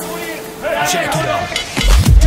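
Volleyball match broadcast sound: a voice over the arena's crowd murmur, then electronic dance music with a heavy bass beat coming in near the end.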